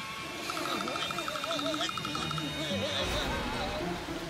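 Wordless cartoon-character vocalizing, a voice sliding up and down in pitch, over light background music. A rapid pulsing high tone runs through the first half.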